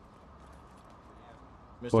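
Quiet courtroom room tone with a few faint, irregular ticks. A man starts speaking near the end.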